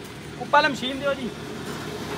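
A brief spoken phrase over steady background road noise.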